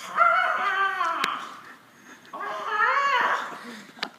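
A young man's voice crying out twice in long, high-pitched wails that bend up and down, with a short click between them.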